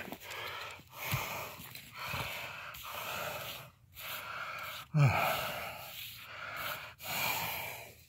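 A man breathing heavily while exerting himself digging, close to the microphone, about one breath a second, with a short voiced grunt about five seconds in.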